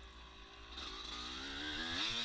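Yamaha YZ250 two-stroke dirt bike engine running under the rider, fairly quiet at first and getting louder, its pitch slowly rising as the bike picks up speed.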